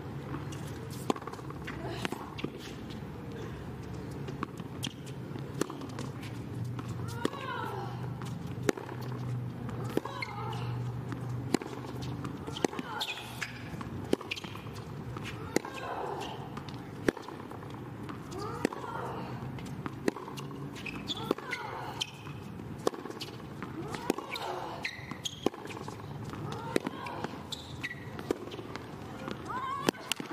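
A long tennis rally on a hard court: sharp racket strikes on the ball and ball bounces, about one every second or so, with voices heard between the shots.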